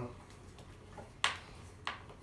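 Mostly quiet, with two short clicks over a second in, just over half a second apart: a hand screwdriver turning a screw set into a wooden floorboard, adjusting its height under a spirit level.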